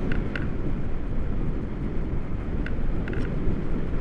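Wind from the glide buffeting the action camera's microphone: a steady, heavy low rumble with a few faint clicks.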